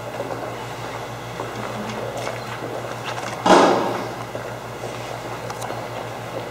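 Room tone with a steady low hum, broken by one sharp thump about three and a half seconds in that dies away over about half a second.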